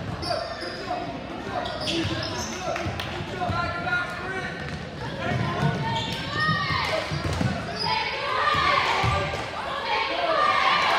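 A basketball being dribbled on a hardwood gym floor, with players' and spectators' voices echoing around the hall. In the second half there are squeaks of sneakers on the court.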